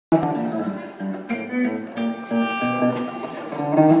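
Electric guitar fingerpicked in a Travis-picking blues style, a steady alternating bass under picked melody notes that ring out one after another, with light cymbal taps from a drum kit.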